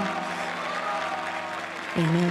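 Theatre audience applauding, with held music notes underneath.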